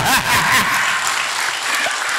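A large seated audience applauding, a steady wash of many hands clapping.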